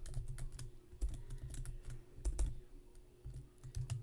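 Typing on a computer keyboard: a run of irregular key clicks with dull thumps.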